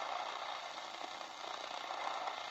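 Selga-404 transistor radio's loudspeaker giving a steady hiss of static, tuned where no station is received.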